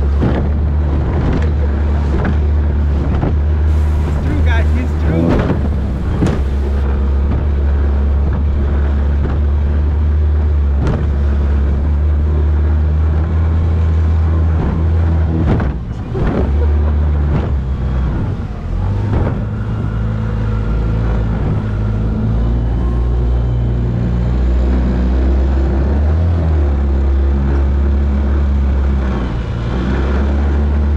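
Small Tohatsu 9.9 outboard motor running steadily at speed, pushing a light plastic boat through choppy sea, with wind and water noise; its pitch shifts a couple of times.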